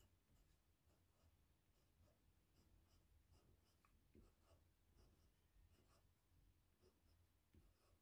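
Near silence with faint, scattered scratches of a coloured pencil making short strokes on paper.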